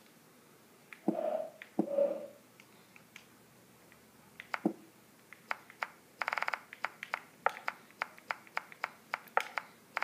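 A run of sharp, separate clicks starting about four seconds in, roughly two a second, with a quick rattle of clicks near the middle. Two brief vocal sounds from a child come earlier.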